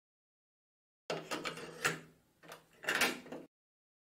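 Cassette player sound effect: a few mechanical clunks and clicks of the tape door and buttons, starting about a second in and cutting off suddenly.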